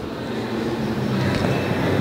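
Steady background din of a large convention hall, a low rumble with a faint hum.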